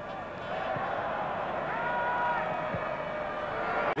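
Football stadium crowd noise: a steady hubbub, with a few voices calling out above it in the middle stretch.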